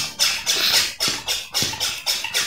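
Plastic hand pump drawing air out of a vacuum storage bag of clothes. Each stroke gives a rhythmic hiss, about two strokes a second.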